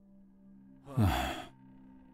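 A man's short, breathy sigh about a second in, falling in pitch, over a faint steady hum.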